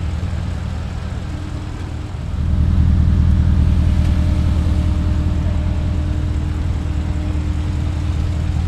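Porsche Cayenne Turbo's twin-turbo V8 idling at a steady speed, getting louder about two seconds in and then holding.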